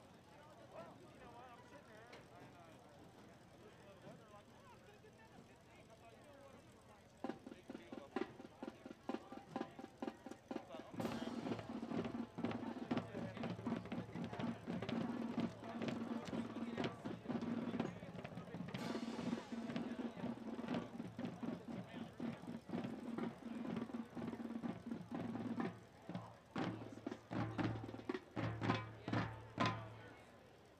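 High school marching band starting its field show: after a few quiet seconds, drum hits begin about seven seconds in, and around eleven seconds in the full band joins with held chords over the drumming.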